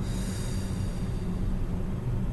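A long breath blown out through pursed lips, fading within about a second, over a steady low background hum.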